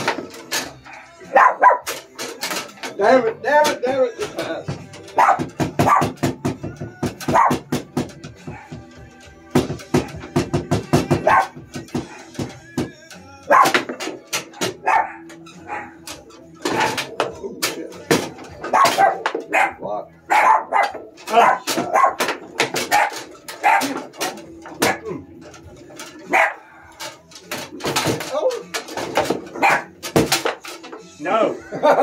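Foosball being played: rapid, irregular sharp cracks of the ball striking the players' feet and the table walls, with rods clacking. A dog barks repeatedly over the play.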